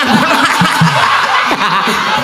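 Several people laughing together in a loud burst of laughter.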